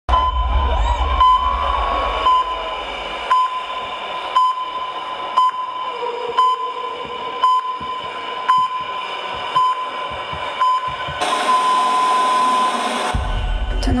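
Heart-monitor sound effect over a large sound system: a short beep about once a second over a steady high tone, then a long unbroken flatline tone near the end. A deep bass rumble runs under the first few seconds and comes back just before the end.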